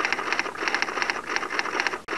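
Typing sound effect: a fast, uneven run of keystroke clicks, with a brief break near the end.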